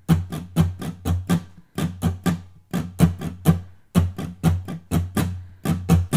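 Steel-string acoustic guitar strummed in a steady rhythm of about four short strokes a second, each chord cut off quickly. It is playing the E minor, D and G chord pattern.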